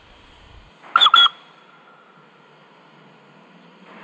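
Two short toots of a steam whistle on Steam Motor Coach No 1, about a second in, one right after the other.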